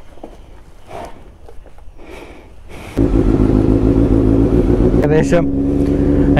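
Kawasaki Z900's inline-four engine starts suddenly about halfway through and runs at a steady idle.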